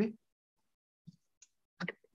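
A voice breaks off, then near-total silence of a video call's noise-gated audio, broken by a couple of faint clicks in the middle; a voice starts again near the end.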